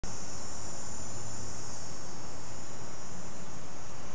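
Insects singing in a steady, high, thin drone, over a low constant rumble.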